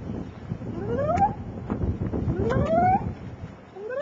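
A toddler's voice making two long, rising wordless cries, with a third starting at the end, over wind rumbling on the microphone.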